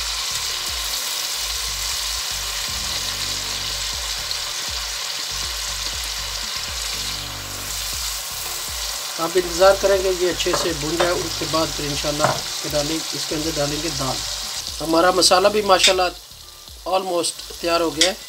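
Onion-tomato masala frying in oil and a little water in a steel pot: a steady sizzle, with a wooden spatula stirring it. A voice talks over it in the second half, and the sizzling falls away a couple of seconds before the end.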